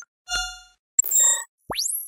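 Sound effects of a news channel's animated logo sting: a ringing ding with a low thump, a second brighter chime about a second in, then a quick sweep rising sharply in pitch near the end.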